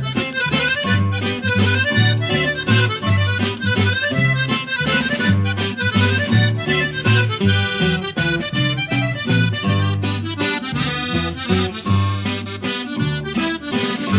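Instrumental break of a norteño redova: a button accordion plays the lead melody over a repeating bass line and string accompaniment, with no singing.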